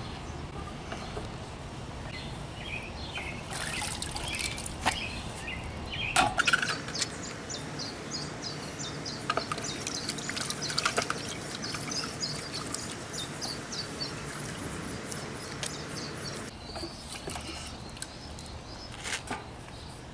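Water sloshing and splashing in a plastic bucket as a hot copper transmission line is dipped in it to cool after silver-soldering, with birds chirping in the background.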